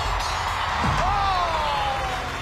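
Large metal performance hoops landing on the stage floor with a knock about a second in, then a ringing tone that slides down in pitch, over background music.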